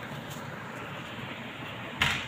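Steady background noise with no distinct event.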